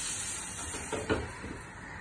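Paniyaram batter sizzling in a hot paniyaram pan on a gas burner, a steady hiss, with a short knock about a second in.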